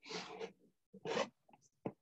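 Grapplers' bodies scuffing and rubbing on training mats during no-gi sparring: two scratchy rubbing bursts, the first about half a second long and the second about a second in, then a couple of short knocks near the end.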